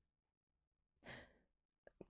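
Near silence, with one faint breath about a second in as the speaker pauses before going on talking.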